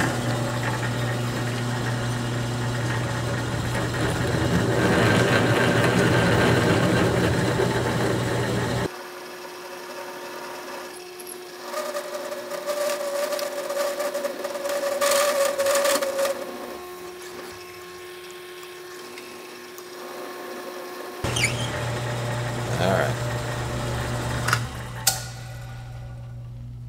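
A drill press drives a resharpened half-inch twist bit through quarter-inch mild steel, the motor humming steadily under the cut. The sound drops abruptly about nine seconds in; through the quieter middle a steady mid-pitched tone is held for about four seconds, and the full machine sound returns about 21 seconds in.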